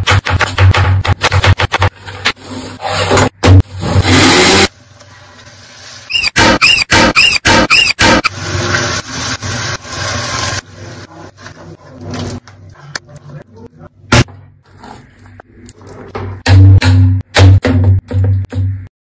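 A kitchen knife chops tomatoes on a wooden cutting board in a quick run of sharp cuts. About six seconds in comes a row of short high-pitched sounds, then a steady hiss, then scattered knocks and clinks of cooking, all over background music with a heavy low beat.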